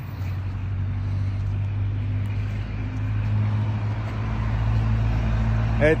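A motor vehicle's engine running steadily, a low drone that grows slightly louder toward the end.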